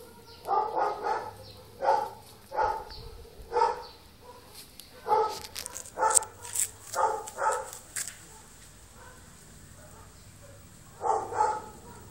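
Young puppies yelping in a run of short, high cries, about a dozen in the first eight seconds and one more near the end.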